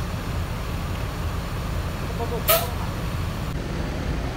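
Mercedes-Benz-engined coach running slowly with a steady low rumble. A short hiss of air sounds about two and a half seconds in.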